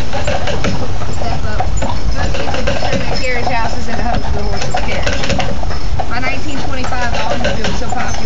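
A tour guide talking on and off, the words hard to make out, over a steady low rumble of street and vehicle noise.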